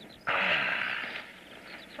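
A loud, breathy hissing exhale from a person, starting a moment in and lasting about a second before it fades.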